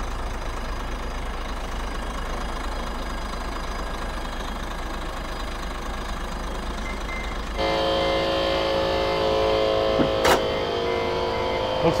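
Hino 500 truck's diesel engine idling steadily. About two-thirds of the way through, the sound changes to a steadier hum with several clear tones, and there is a single sharp click shortly after.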